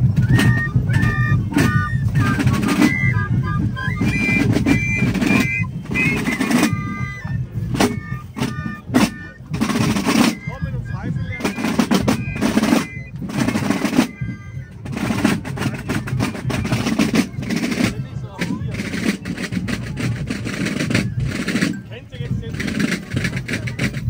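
Basel carnival drums played by a marching drum group, with sharp strokes and rolls. A high piped melody plays over them for about the first seven seconds and briefly later on.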